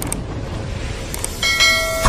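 Subscribe-button sound effect: short clicks, then about one and a half seconds in a bell dings and keeps ringing.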